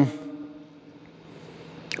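Quiet room tone of a large hall: the tail of a spoken "um" rings out briefly, then only a low, even background hiss remains.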